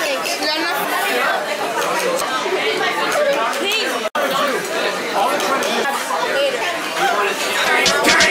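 Restaurant dining-room chatter: many overlapping voices talking at once with no single clear speaker, cutting out for an instant about four seconds in.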